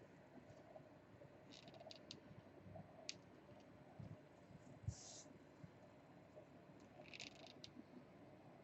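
Near silence, with faint scattered clicks and short rustles from hands handling fabric trim and a hot glue gun, and a soft knock about five seconds in.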